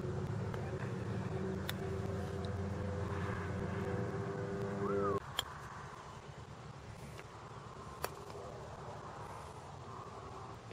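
A steady low engine drone stops suddenly about five seconds in. After it, a quieter outdoor background carries a few sharp single clicks of putters striking golf balls, the clearest about eight seconds in.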